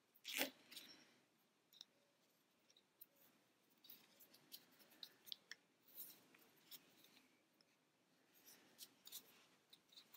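Faint rustling and small clicks of hands handling yarn and a crochet hook, with one short, louder sound just after the start.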